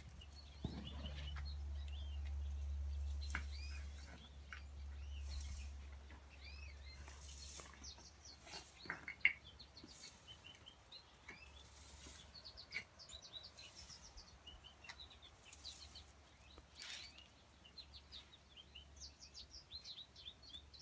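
Wild birds chirping and singing in the background, many short calls throughout. A low rumble runs under them for the first few seconds, and there are occasional faint clicks.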